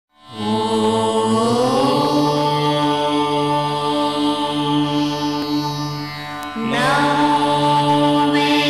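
Devotional chant music for a channel ident: a mantra sung in long held notes over a steady drone. It fades in at the start, rises in pitch about a second and a half in, and pauses briefly before a new phrase begins about six and a half seconds in.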